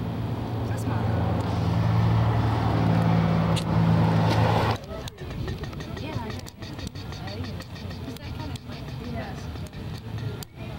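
A motor vehicle engine idling with a steady low hum, cut off suddenly about five seconds in, after which only quieter street background with faint voices remains.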